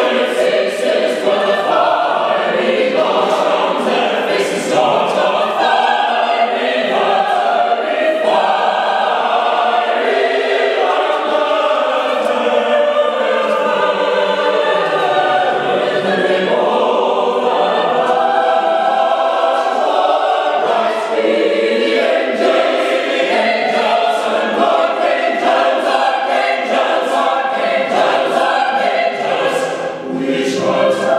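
Mixed-voice double choir singing unaccompanied in sustained full chords.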